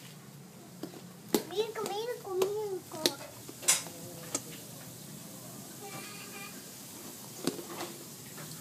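A child's high-pitched voice chattering in short phrases during the first few seconds, with a few sharp clicks and clinks scattered through, then a low steady background murmur.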